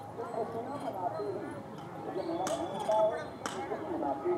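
People's voices talking in the background, too indistinct to make out, with two sharp clacks about two and a half and three and a half seconds in.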